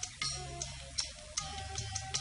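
Film background music: a light ticking percussion keeps a steady beat of about two to three clicks a second over held, shifting melodic notes.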